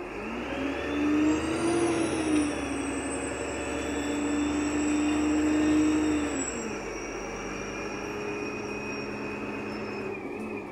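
VDL SB200 bus engine heard from inside the saloon, pulling away under power: the engine note climbs, dips as the gearbox changes up about two seconds in, holds steady under load, then falls away as the driver eases off about six seconds in. A high whine runs over it.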